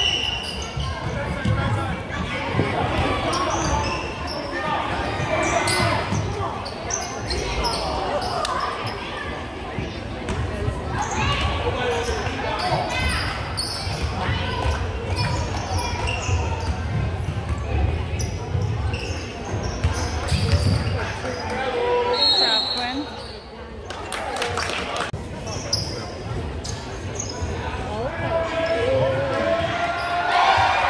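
Basketball dribbled on a hardwood gym floor during play, with spectators talking close to the microphone, echoing in a large gymnasium.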